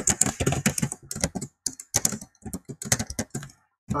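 Typing on a computer keyboard: a quick, uneven run of keystrokes with a few short pauses.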